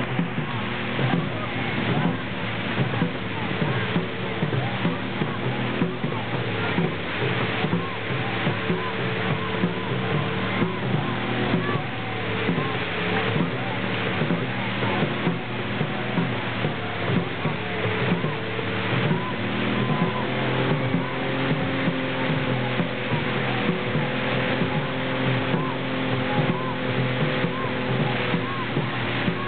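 Voices on a moving boat over a steady engine-like hum, with water and wind noise throughout.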